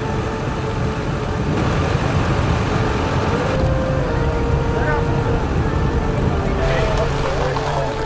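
A minivan's engine running steadily as it drives along a street, with busy street ambience and indistinct voices in the background.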